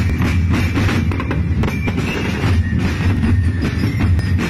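A street drum band of bass drums and snare drums playing an Ati-Atihan drum beat, loud and steady, with rapid strokes throughout.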